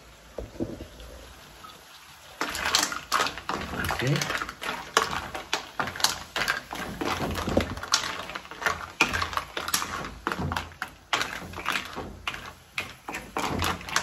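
Wooden spoon stirring mussels in their shells with red peppers in a metal wok: the shells clatter against each other and the pan in quick, irregular clicks and knocks, starting about two seconds in.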